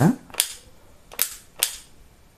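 Three sharp plastic clicks from the gun-style trigger of an iBell electric air blower being pressed and released by hand, with the motor not running: two close together near the end.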